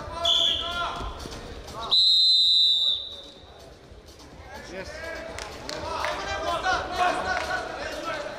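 Referee's whistle in a wrestling bout: a short blast just after the start, then a loud, steady blast of about a second that stops the action. Voices call out in the hall around it.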